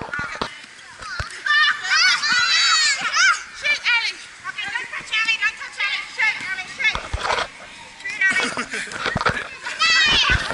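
Girls and women shouting, squealing and laughing over one another during a group game, with a few sharp knocks in the last few seconds.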